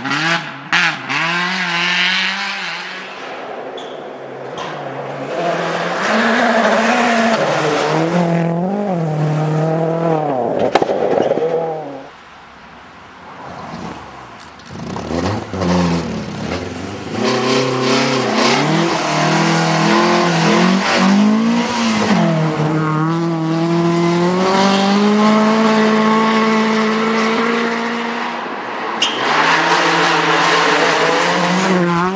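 Rally cars at full throttle on snow-covered forest stages, one after another. The engine note climbs and drops again and again with the gear changes, and there is a brief quieter lull about halfway through.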